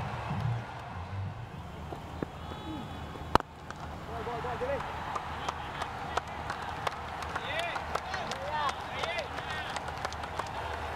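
A single sharp crack of a cricket bat striking the ball, about a third of the way in, over open-ground noise. Short voices call out across the field after the shot.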